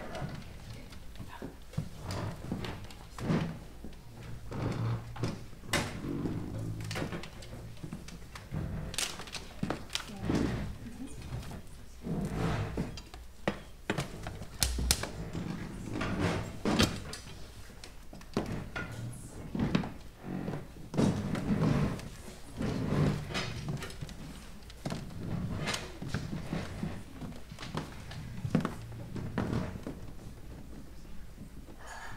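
Irregular thuds, knocks and clicks of stage equipment being handled and moved while a keyboard is set up.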